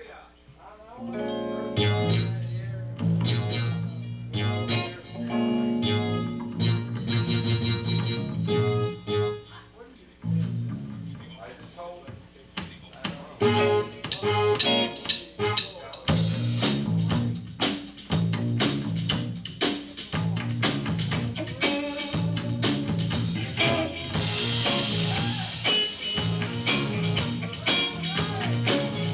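Live band playing amplified music. Bass and guitar notes start about two seconds in, drop away briefly near ten seconds, and the full band with drum kit comes in around sixteen seconds.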